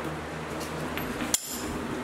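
Faint metallic clinks of a hand wrench being picked up and fitted to a bolt, over a steady low hum, with one sharp click about a second and a half in.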